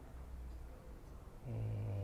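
A man's voice holding a low, steady hesitation sound, an "uhh" or "mmm", for well under a second near the end, over quiet room tone.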